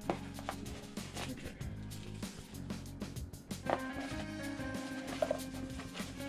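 Background music, with a few light knocks and rustles from a cardboard box being handled.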